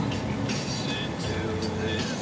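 Steady road and engine noise inside the cabin of a moving car.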